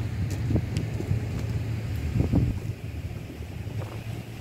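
Wind buffeting the microphone: a gusty low rumble that swells and dips, with a few faint clicks.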